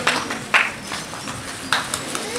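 Scattered handclaps: two loud, isolated claps, one about half a second in and one near the end.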